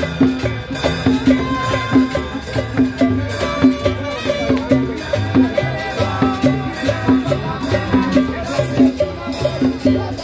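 A live street band playing Latin dance music, with drums, saxophone and shaker or scraper percussion over a repeating bass line and a steady beat.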